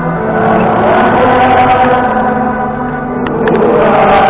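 A large crowd singing together in unison, in long held notes. A few brief clicks come about three seconds in.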